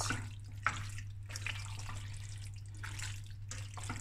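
A spoon stirring and folding thick, creamy macaroni and prawns in a stainless steel pot: repeated wet, sticky squelching and scraping strokes, over a steady low hum.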